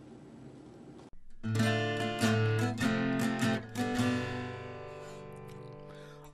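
Acoustic guitar strumming the opening chords of a song after a quiet first second or so, the last chord left to ring and fade away.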